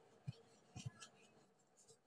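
Faint scratching of a paintbrush's bristles dabbed and scrubbed over paper, a few short strokes with soft knocks, mostly in the first second.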